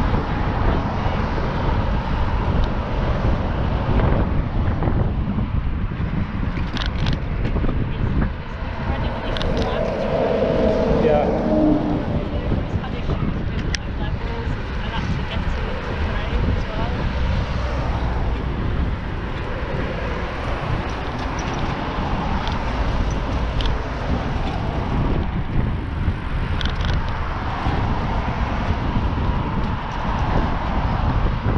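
Wind noise on a bicycle-mounted camera's microphone while riding, with cars passing on the road alongside. There are a few brief sharp rattles or clicks.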